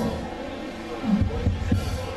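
Live band music in a pause between the vocals: low beats from the drums and bass, with a few louder low thumps about a second in.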